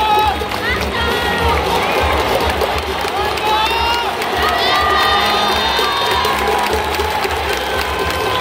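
Large baseball stadium crowd cheering and shouting, with many voices calling out over one another and hands clapping.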